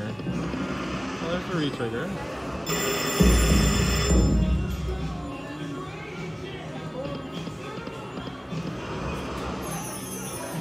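Celestial King slot machine playing its bonus-round music and reel sounds during the free games. About three seconds in, a loud chiming fanfare with a deep boom lasts about a second and a half. It marks extra free games being awarded, as the spin count rises from 10 to 13.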